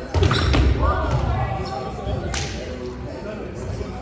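Volleyball rally in a gym: sharp smacks of the ball being hit near the start and again a little past two seconds, with thuds on the hardwood floor and players' shouts, all echoing in the large hall.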